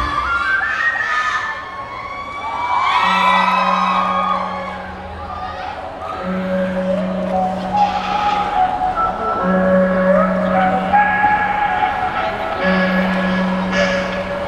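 The loud dance track cuts off, leaving softer music with long held low notes and a slow higher melody. Audience voices shout and cheer over it.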